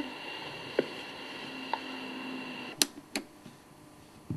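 Low hiss with a faint steady hum that stops about three seconds in, broken by four sharp clicks, the last two close together.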